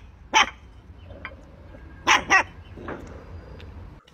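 Puppies giving short, sharp barks: one just after the start, two in quick succession a little after two seconds, and a fainter one near three seconds.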